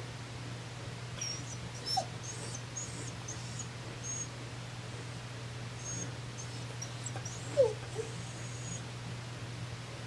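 Dog whining: faint high squeaks on and off, with two short falling whimpers, the louder one a little before the end.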